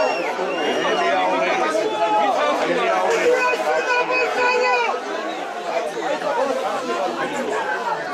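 Speech: voices talking over one another, the match commentary, with no other sound standing out.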